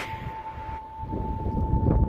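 Wind buffeting the microphone, a low rumble, under one steady held tone from background music.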